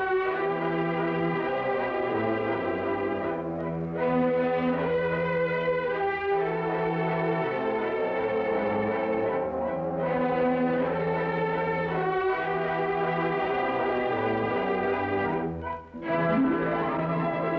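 Orchestral music, held chords that change every few seconds, with a short break just before the end: the episode's closing music.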